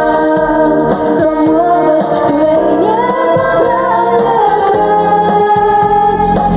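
Live music: women singing a melodic song with a small band accompanying them, held and gliding vocal notes over the instruments.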